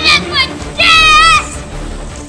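A young child yelling in high-pitched, wordless calls: a couple of short ones, then a longer wavering call about a second in, over background music.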